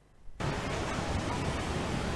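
Steady, even hiss of outdoor street ambience that starts abruptly about a third of a second in.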